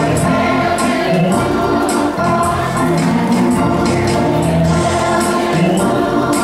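Church gospel choir singing together over a steady beat.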